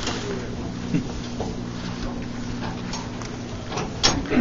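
Steady low mechanical hum of several even tones inside a steel compartment, with a soft knock about a second in and a few faint ticks.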